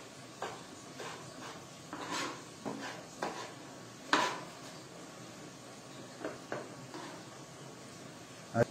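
Chef's knife cutting cooked octopus into small pieces on a plastic cutting board: irregular sharp taps of the blade meeting the board, spaced from half a second to a second or more apart, the loudest about four seconds in.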